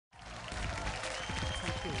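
Audience applause mixed with background music, starting suddenly out of silence; voices come in near the end.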